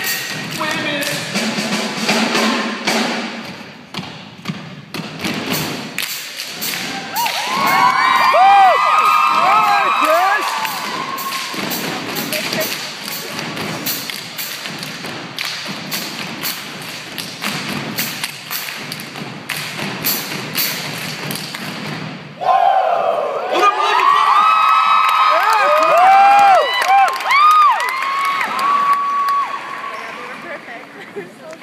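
Rhythmic thumps from dancers stomping and stepping on a stage, with music behind, and two spells of short, high sneaker squeaks, the first about seven seconds in and the second from about twenty-two seconds in to the end.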